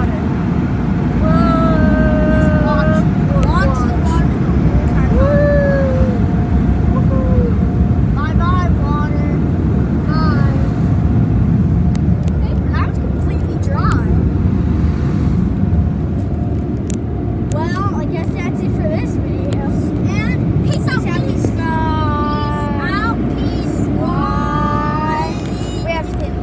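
Automatic car wash dryer blowers heard from inside the car: a loud, steady rumble with a thin steady whine above it, as the air drives the water off the car.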